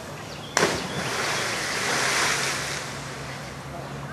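A person plunging into the river: a sudden splash about half a second in, then about two seconds of churning, spraying water that swells and dies away.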